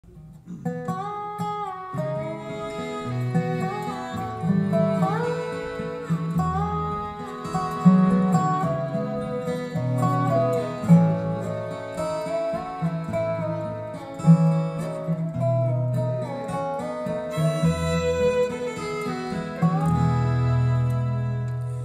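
Acoustic bluegrass band playing an instrumental introduction: a lead melody with sliding notes over strummed and picked strings (guitar, mandolin, banjo, fiddle, dobro), with upright bass notes underneath. The music starts a moment in.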